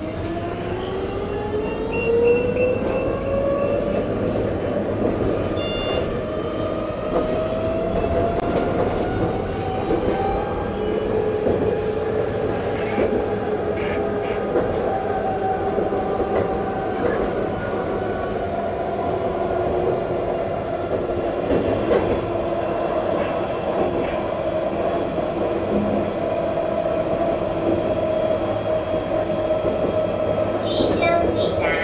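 Light-rail tram heard from inside the driver's cab, its traction motors whining in several tones that rise in pitch over the first ten seconds as it gathers speed, then hold steady while it cruises, over a constant rumble of wheels on the rails.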